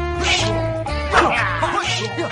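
Film soundtrack music with held notes over a steady bass beat, overlaid by a high, wavering cry that bends down in pitch, repeating about once a second.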